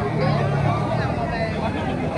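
Babble of many diners talking at once, no single voice standing out, over a steady low hum.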